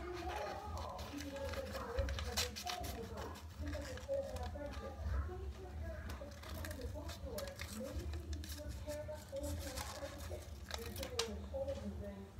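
Scissors cutting card paper, with sharp snips and paper rustling every few seconds, over a faint voice in the background.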